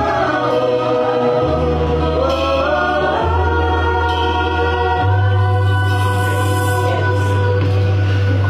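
Women singing a song together in held, wavering notes over an accompaniment of long bass notes that change every second or two.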